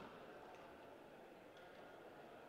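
Faint, steady sports-hall ambience: a low murmur of the hall and crowd, with a few faint clicks from play on the court.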